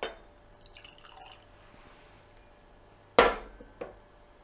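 Whisky poured from a glass bottle into a tasting glass, gurgling and dripping briefly. About three seconds in, the bottle is set down on a stone tabletop with a loud knock, followed by a lighter knock.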